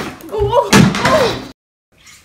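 A molded chair tipping over backward with a child in it and crashing onto a hardwood floor, a child's voice crying out over the crash. The sound cuts off suddenly about a second and a half in.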